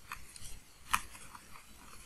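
Faint taps and clicks of a stylus on a pen tablet during handwriting: a few short ticks, the sharpest about a second in.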